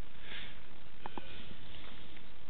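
A man sniffs once, over the steady hiss of the recording, followed by two faint short clicks about a second in.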